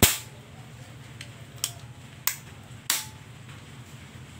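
PCP air rifle: one loud, sharp crack at the start, then three lighter clicks of the rifle's metal action being handled, the last with a brief ring.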